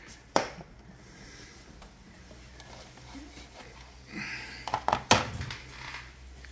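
Handling noise on a workbench: a sharp click about half a second in, then a low steady hum, and near the end a rustle followed by a few sharp knocks and clicks.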